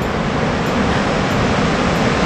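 Steady rushing of a whitewater river pouring over rapids below, a dense, even noise.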